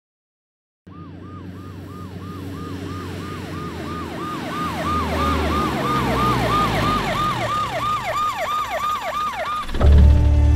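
Police van siren, a falling wail repeating about three times a second, getting steadily louder as it approaches, over a low rumble of the vehicle. It starts about a second in, after silence, and cuts off just before the end.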